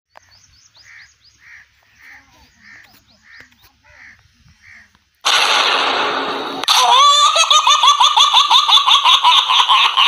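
Loud laughter, a quick run of pulsing 'ha-ha' bursts about four a second, starting about seven seconds in. It follows a loud hissing burst of noise that lasts about a second and a half. Before that there is only faint, evenly repeated chirping.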